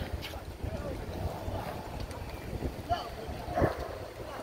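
Wind buffeting the microphone in a low rumble, with faint distant voices, and a short thump about three and a half seconds in.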